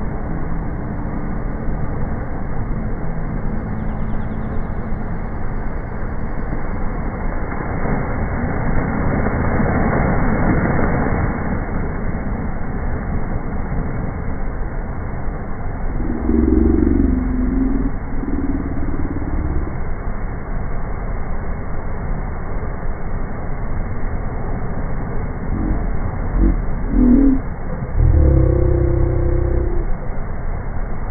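Sea surf: waves breaking and washing up over wet sand, a steady wash that swells about ten seconds in. Low droning tones come in briefly twice in the second half.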